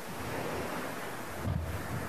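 Steady rushing hiss of background noise on the altar microphone feed, with a soft low thump about one and a half seconds in as items on the altar are handled.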